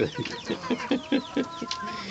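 Chickens clucking while they feed: a quick run of short low clucks, with thin, high cheeping from the young birds over it and one longer held call in the second half.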